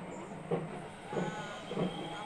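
A steady rhythm of short low thuds, about three every two seconds, over a continuous noisy background.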